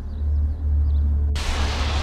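Low, steady rumbling drone of a tense documentary soundtrack. About one and a half seconds in, a sudden loud rush of noise cuts in at the edit.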